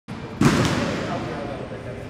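A single sharp thump about half a second in that rings away over the next second, heard over faint background voices.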